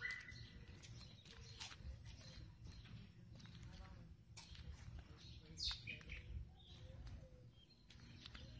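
Faint outdoor ambience: a few bird chirps over a low steady rumble, with scattered faint clicks.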